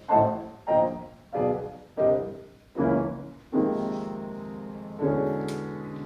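Grand piano playing a jazz arrangement of a show tune: a run of separately struck chords, about one every two-thirds of a second, then two longer held chords in the second half.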